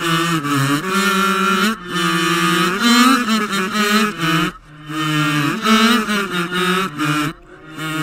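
A voice played backwards in long, sustained, wavering sung notes that sound like a garbled chant. It breaks off briefly twice, about halfway through and near the end.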